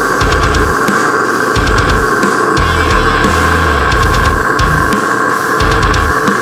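Instrumental deathcore with no vocals: heavily distorted guitars held in a dense wall, with drums and low bass hits that come in stop-start blocks.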